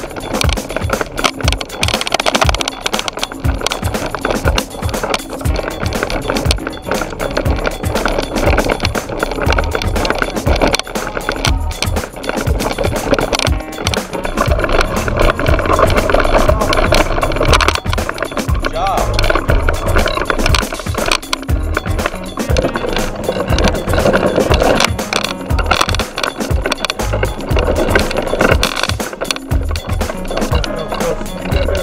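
Toddler's tricycle rolling on a concrete sidewalk: a steady close rattle and clatter of the wheels and frame, picked up by a camera clamped to the tricycle. Music plays along with it.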